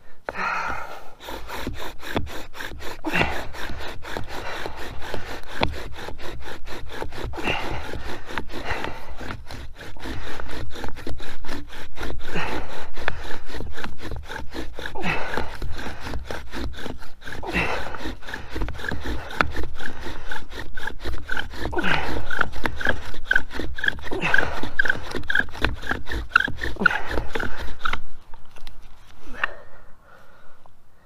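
Bow drill in use: a wooden spindle spun fast by a sawing bow, grinding in the notch of a wooden hearth board to build up hot dust for an ember. It runs as a steady rapid rubbing, with a high squeak about twice a second in the later part, and stops suddenly near the end.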